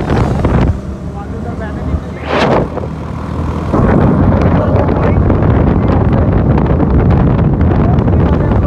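Sport motorcycle engine idling, with a sharp throttle blip about two and a half seconds in, then pulling away about four seconds in: the engine runs on under load, mixed with wind noise on the microphone.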